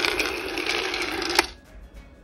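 Cacao beans rattling and tumbling in a roaster's pan as its rotating stirring arm turns them: a dense, steady clatter. It ends with a sharp click about one and a half seconds in and cuts off abruptly.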